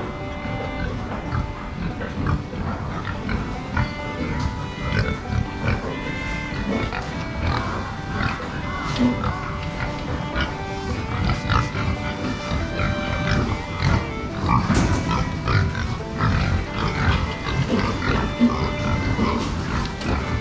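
Background music over Berkshire pigs grunting in their pens.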